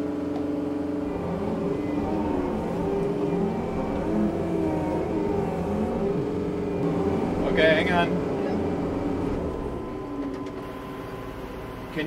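Kubota tractor's diesel engine working under load, its pitch rising and falling repeatedly as the throttle is worked while pulling on tow straps to free a stuck skid steer.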